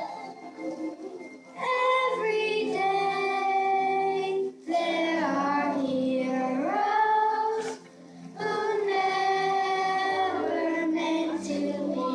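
A child singing a solo in long held phrases with brief breaks between them, over a musical accompaniment.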